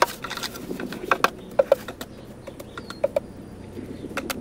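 Garden hoe scraping and knocking through a peat and perlite potting mix in a plastic wheelbarrow: irregular short scrapes and clicks.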